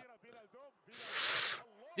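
A short hiss that swells and fades in under a second, about a second in, with a thin high tone rising and falling inside it.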